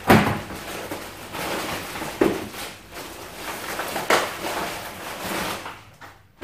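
Thin plastic shopping bags rustling and crinkling as groceries are pulled out by hand, with sharper crackles or knocks near the start, about two seconds in and about four seconds in.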